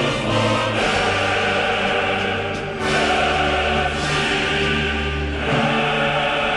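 A choir sings slow, sustained chords over musical accompaniment, with the harmony shifting every couple of seconds.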